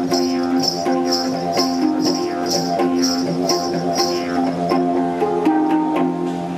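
A didgeridoo plays a steady low drone while a steel handpan, struck by hand, rings out clear pitched notes over it. A high hissing pulse keeps time about twice a second and fades out about five seconds in.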